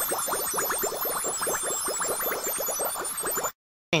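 Intro sound effect: a dense stream of quick rising blips under high twinkling tones. It cuts off suddenly about three and a half seconds in.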